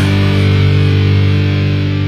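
Rock music: a distorted electric guitar chord held and ringing, slowly fading.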